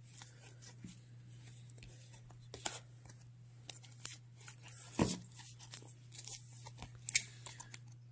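Baseball cards in plastic sleeves being flipped and slid through the hands: soft rustling and light clicks with a few sharper taps, over a low steady hum.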